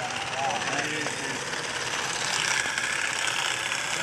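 A powered olive harvester on a long pole running steadily, its head shaking the olive branches with a rapid rattle. People talk over it.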